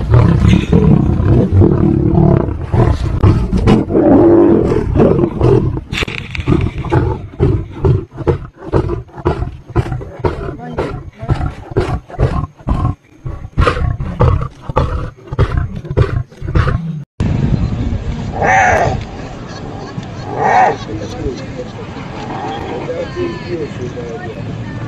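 Lions roaring and growling close up as they reach a pile of meat. Then a run of quick, regular pulses, about two or three a second, as one lion feeds right over the microphone. About seventeen seconds in, the sound cuts to a quieter outdoor recording with two short calls.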